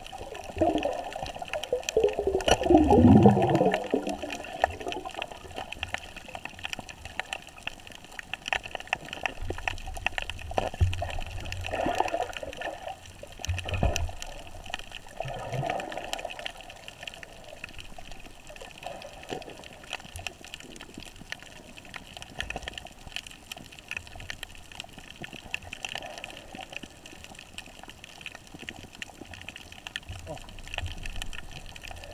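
Water gurgling and bubbling underwater, heard through an action camera's waterproof housing. The loudest gurgle falls in pitch over the first few seconds, with smaller swells around twelve and sixteen seconds, over a steady faint crackle of small clicks.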